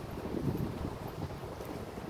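Wind buffeting a phone's microphone while walking, a low, uneven rumble.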